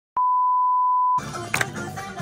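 A single steady test-tone beep from a TV colour-bars transition effect, lasting about a second and cutting off suddenly. Music then comes back in.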